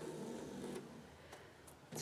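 Faint handling of cotton quilting strips on a sewing table: a soft rustle as they are picked up and laid flat, then a few light ticks.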